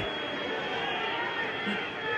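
Stadium crowd ambience at a football match: a steady murmur of spectators and players' voices in the background.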